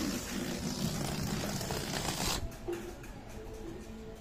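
An inflated rubber balloon let go and deflating, air rushing out of its neck with a fluttering rasp, cutting off suddenly about two and a half seconds in as the balloon empties.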